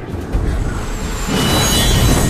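Animation sound effect of a glowing streak of light flying through the air: a low rumble sets in just after the start, then a rushing whoosh swells up about halfway through.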